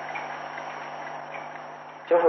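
Steady hiss with a low, even hum: the background noise of an old recording, with no voice over it.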